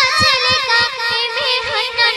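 A young girl singing a Bengali gazal, an Islamic devotional song, into a microphone. She holds one ornamented line with a wavering pitch over a quick low beat.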